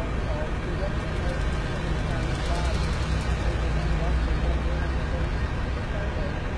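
Steady low rumble of a running vehicle or nearby traffic, a little stronger about halfway through, with faint indistinct voices in the background.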